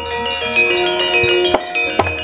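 Gamelan playing: bronze metallophones and gongs ringing in layered held tones, with a few sharp percussion strikes.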